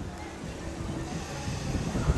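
Wind buffeting the microphone in low gusts, with music playing faintly underneath.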